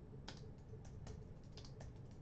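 Computer keyboard typing: about eight quick, faint keystrokes at an uneven pace.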